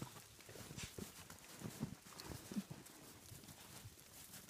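Irregular footfalls crunching and thumping in fresh snow, faint, with a few louder steps about one and two and a half seconds in.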